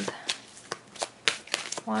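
A deck of tarot cards being shuffled by hand: a quick, irregular run of sharp card clicks and flicks.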